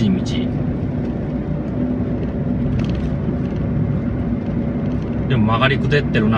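Steady road noise of a car driving, heard inside the cabin: an even low rumble of tyres and engine at constant speed. A man's voice comes in briefly near the end.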